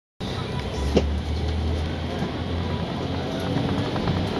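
Volvo Olympian double-decker bus running slowly, heard inside the cabin: a steady low engine drone with a single sharp knock about a second in.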